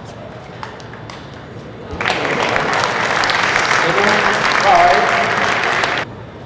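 A few sharp clicks of a table tennis ball on paddle and table. About two seconds in, loud crowd applause breaks out with voices shouting, and it cuts off abruptly at the end.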